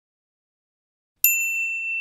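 Silence, then a little over a second in a single bright electronic ding: one clear high tone struck once that rings on and slowly fades, the chime of a channel intro sting.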